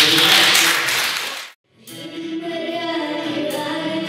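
Applause for about a second and a half, cut off suddenly, then a song begins: steady sung chords with choir-like voices over a backing track.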